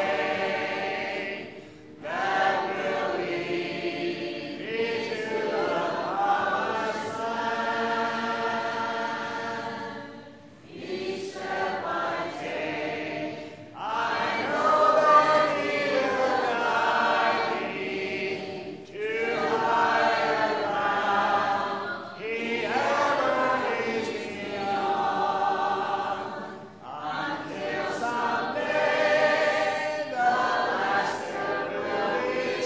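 A congregation singing a hymn a cappella, many voices together without instruments, in long sung phrases with brief breath pauses every few seconds.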